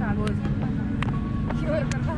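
Players' voices talking over a steady low hum and a rumbling noise on a helmet-mounted camera's microphone, with three light clicks.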